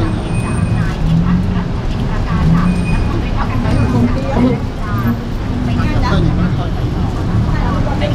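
Indistinct voices of people talking nearby over a steady low rumble.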